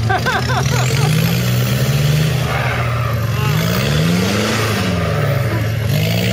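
Off-road 4x4 engine running under load as the truck crawls over rough, muddy woodland ground, revving up in the middle and dropping back about five seconds in. Brief laughter at the start.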